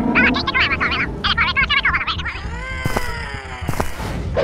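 Cartoon sound effects: first a flurry of high, wavering creature squeals. Then a long falling whistle, the cartoon cue for something dropping from the sky, with a few sharp clicks under it.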